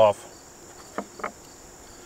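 Insects trilling steadily in the background, a thin high-pitched drone, with two faint short knocks about a second in.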